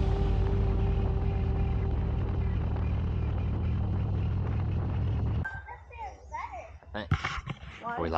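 Motorcycle riding noise, a steady engine hum under wind and road rush, which cuts off suddenly about five and a half seconds in. After it come quieter short sounds and a few clicks.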